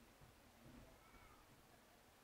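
Near silence, with one faint, brief call that rises and falls about a second in: a distant shout.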